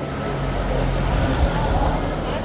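Street noise: a motor vehicle's engine running with a steady low hum, over a background of voices.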